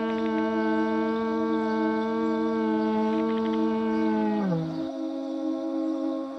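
A long plastic tube blown like a horn: one loud, low note, held steady for about four and a half seconds, then sagging in pitch and cutting off. A steady low drone continues underneath.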